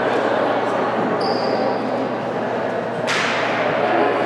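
Voices chattering and echoing in a large gymnasium, with a short high squeak about a second in and one sharp slap with a ringing echo about three seconds in.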